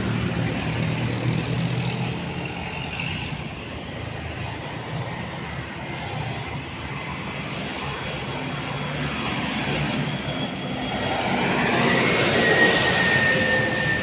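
Road traffic: a vehicle engine droning low and steady, then another vehicle passing that grows louder about ten seconds in, with a thin high whine near the end.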